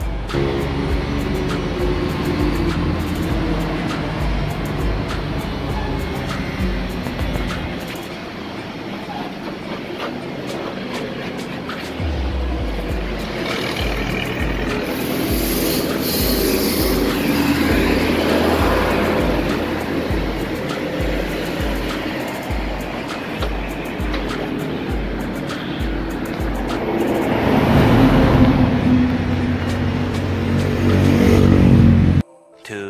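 Background music with a steady bass beat that comes in about twelve seconds in, with a brief hiss near the middle.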